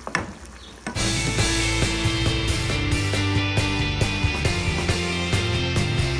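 A spatula knocks once against a saucepan of cooking chicken with faint sizzling. About a second in, instrumental background music with held bass notes and a steady beat starts abruptly and becomes the loudest sound.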